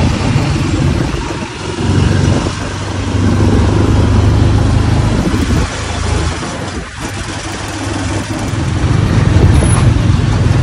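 Motorcycle engine of a Philippine tricycle running, its level rising and falling every few seconds.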